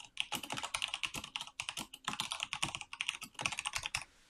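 Typing on a computer keyboard: a fast run of keystrokes, entering a short phrase with a few brief pauses.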